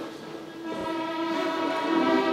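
String orchestra holding a soft sustained chord that dips to its quietest about half a second in, then swells steadily louder.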